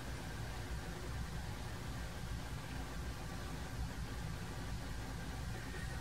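Steady background noise: an even hiss with a low hum underneath, and no distinct event.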